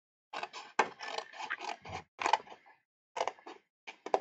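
Small scissors snipping through white card: a run of short cuts, a brief pause, then a few more snips after a second-long gap near the end.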